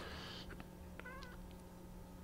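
Quiet room with a steady faint low hum, and one brief, faint, wavering squeak about halfway through.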